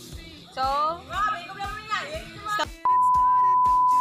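An electronic beep: one steady, pure tone held for just over a second near the end and cut off abruptly, the loudest sound here. Background music and a woman's voice come before it.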